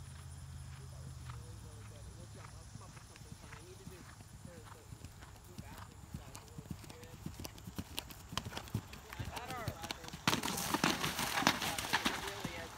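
A horse's hoofbeats on turf, growing louder as it canters closer. About ten seconds in it plunges into a water jump, and a loud splash and churning water follow.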